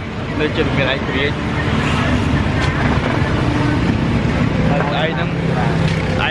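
Street traffic: a steady low rumble of passing vehicles, with a man talking briefly near the start and again near the end.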